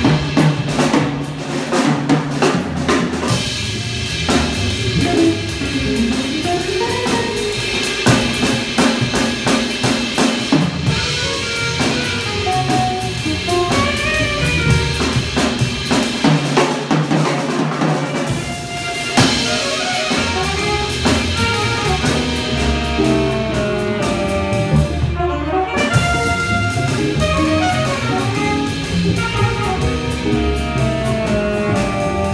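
Small jazz combo playing live, the drum kit to the fore with snare, bass drum and cymbals over upright bass and electric guitar, while the saxophone and trumpet sit out.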